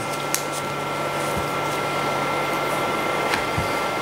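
Steady hiss and hum of room background noise, with a low hum and two faint steady high-pitched whines. Two soft low bumps come about a second and a half in and near the end.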